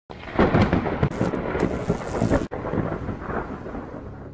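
Rumbling, crackling noise like thunder, with many sharp cracks. It breaks off suddenly about halfway, and a second rumble follows and fades away.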